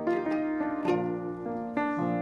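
Ukulele being strummed, a fresh chord struck every half second to a second.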